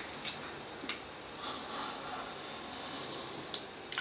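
Craft knife blade drawn through thin patterned paper along a plastic straightedge: a faint scratchy hiss for a second or so in the middle, with a few light clicks around it.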